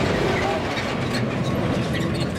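A truck driving past close by on a dirt road, its engine noise loud and steady.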